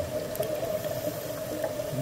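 Underwater ambience picked up by a diving camera: a steady watery murmur with a constant mid-pitched hum.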